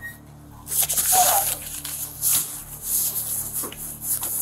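Rustling and rubbing on a body-worn camera's microphone as the wearer moves and pushes through glass doors, in several hissing bursts over a steady low hum.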